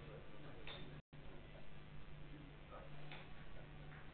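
A few faint, sharp clicks of billiard balls being handled and set down on the table cloth, over a steady low room hum.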